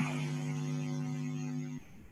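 A steady, even-pitched hum lasting nearly two seconds, cutting off sharply.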